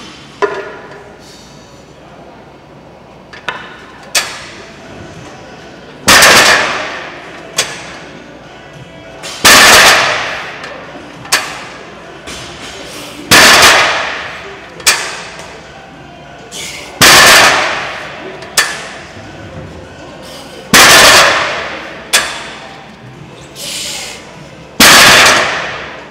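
Strongman yoke press reps: six loud bursts about every four seconds, each starting sharply and fading over about a second, with a short sharp knock between each pair.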